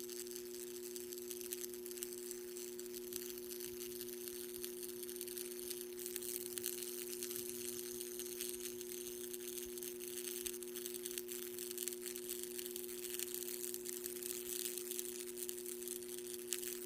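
Steady electrical hum from the energised electrode rig, with a faint crackling hiss that grows a little after about six seconds as the live electrode works through the aluminium oxide, zinc oxide and aerogel powder.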